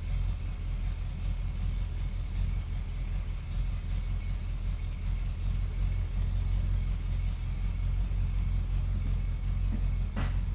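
Ford Torino's engine idling steadily with a low, even hum. Its exhaust still leaks somewhat, described as better but not great.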